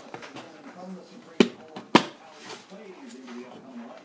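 Two sharp plastic clicks about half a second apart, starting a little over a second in: the housing of a Honeywell digital thermostat snapping onto its wall base plate.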